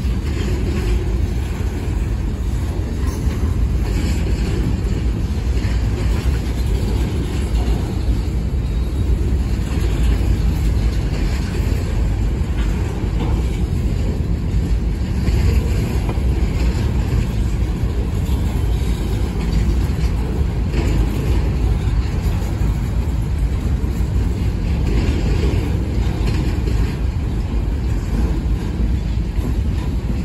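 Freight cars of a long manifest train rolling through a grade crossing: a steady, loud, low rumble of steel wheels on the rails.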